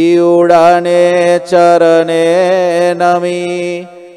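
A man's voice singing one long, held note of a devotional chant, wavering slightly in pitch and fading near the end.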